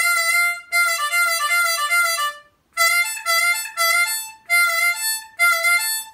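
C diatonic harmonica played on the 5-draw (F), with the note pulled a little flat and released several times. This is an inflective bend that only flattens the note slightly and cannot reach a full semitone. After a short break, a phrase of separate notes moves between the 5-draw and a higher note.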